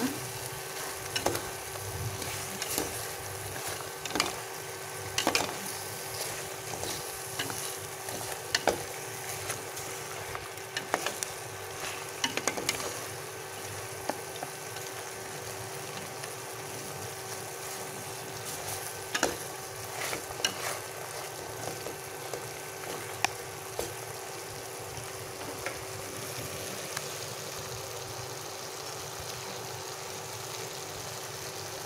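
Marinated pork belly sizzling as it sears in a pot, a steady frying hiss. A utensil clinks against the pot every second or two while the pieces are stirred, the clinks thinning out after about twenty seconds.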